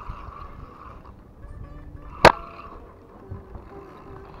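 Spinning reel being wound in by hand, with a steady whir in stretches, and one sharp click a little past two seconds in.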